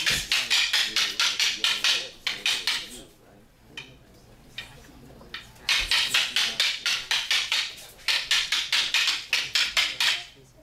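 Wooden fighting sticks clacking together in rapid exchanges, about six strikes a second, in two runs with a short pause between them.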